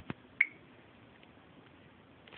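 Two sharp clicks, then a short high-pitched beep about half a second in.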